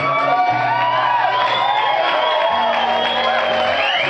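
Live guitar music, an instrumental passage with no singing: held low bass notes move every second or so under high notes that slide and bend in pitch.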